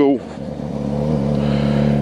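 Yamaha FZ6R motorcycle's inline-four engine running as the bike rides down the street, its steady note growing gradually louder.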